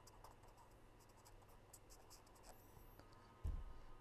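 Faint scratching of a pen writing on paper, a run of short strokes over the first two and a half seconds, then a low thump about three and a half seconds in.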